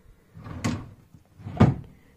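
A drawer of a chest of drawers being pushed shut: two knocks about a second apart, the second the louder.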